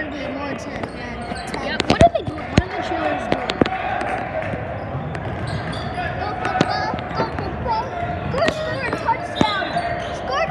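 A basketball bouncing on a hardwood gym floor, a run of sharp echoing bounces bunched about two to four seconds in, over steady crowd chatter.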